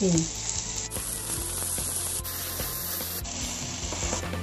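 Diced ham, potato and carrot frying in a stainless steel pan, sizzling steadily, with a metal spatula stirring and scraping through the food.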